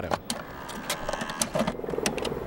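Sharp clicks and a mechanical whir from a professional videotape deck as its play button is pressed and the tape starts.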